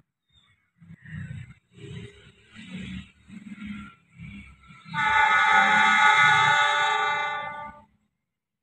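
Air horn of an approaching CC 206 diesel-electric locomotive: one long multi-tone blast that starts about five seconds in and holds for nearly three seconds, the driver's Semboyan 35 horn signal. Faint, uneven rumbling comes before it.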